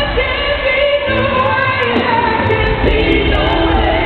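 A woman singing a soul ballad live with band accompaniment, her voice sliding and bending in pitch over a steady bass.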